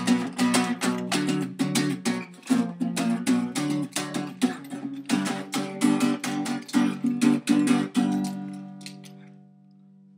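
Acoustic guitar strummed fast in a steady rhythm, chord after chord. About eight seconds in, the strumming stops and a last chord is left ringing and slowly fading.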